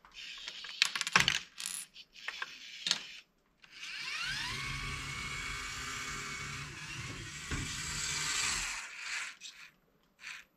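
Small plastic clicks and knocks from a motorized LEGO Technic garbage truck's mechanism. Then, about four seconds in, its small electric motors and plastic gears start up with a whine that rises in pitch and holds steady for about five seconds as the truck drives off, stopping near the end.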